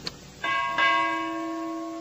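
A bell-like chime sound effect, struck twice about a third of a second apart, then ringing on with a slow fade; a faint click comes just before it.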